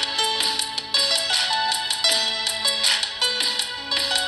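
Saraswati veena playing a film-song melody: plucked notes stepping up and down in pitch, several a second, each ringing on after the pluck.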